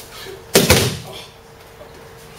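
An aikido partner thrown to the training mat, his body and arms hitting the mat in a breakfall: one heavy thud about half a second in, the loudest sound here.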